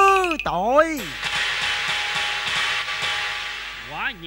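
A woman sings a drawn-out cải lương phrase, her voice sliding up and down in pitch, and stops about a second in. A sustained hissing wash of noise follows and slowly fades.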